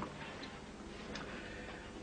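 Quiet room noise with a couple of faint ticks, a short lull between spoken lines.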